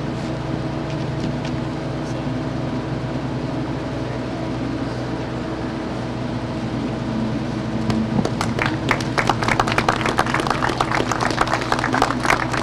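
Steady low hum of idling vehicle engines. About eight seconds in, a dense run of sharp claps starts and keeps going.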